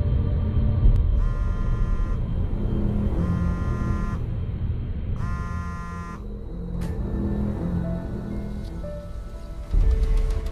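Dark trailer music over a low rumbling drone. A mobile phone ringtone sounds three times, each ring about a second long and two seconds apart. A loud hit comes just before the end.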